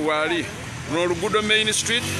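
A voice talking in bursts over the background noise of street traffic.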